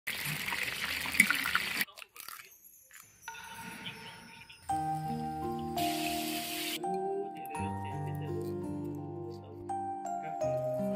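Spring rolls deep-frying in hot oil in a wok, sizzling and crackling for about two seconds. From about five seconds in, background music with held notes, and a short burst of hiss a second later.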